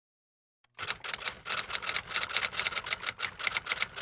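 Typewriter keystrokes as an intro sound effect: rapid, irregular clacking at several strokes a second, starting under a second in after silence.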